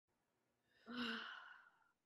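A woman's single sigh about a second in, starting with a brief voiced tone and trailing off into breath over about a second.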